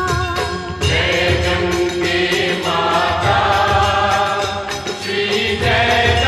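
Hindu devotional aarti song: voices singing the melody together over a steady drum beat.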